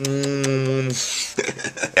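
A man's mock kissing noises: a drawn-out, steady "mmm" hum for about a second, then a breathy rush and a few small clicks of the lips, ending in a short laugh.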